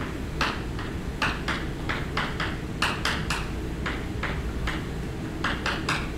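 Chalk writing on a blackboard: an irregular run of short scratches and taps, a few each second, as a line of words is written, over a steady low room hum.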